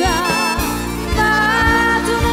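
Italian dance band playing a tango: an accordion melody, first wavering and then on long held notes, over a steady bass beat.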